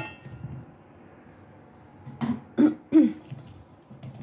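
A person coughing three times in quick succession, starting about two seconds in.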